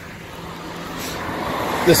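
A road vehicle approaching, its tyre and road noise growing steadily louder.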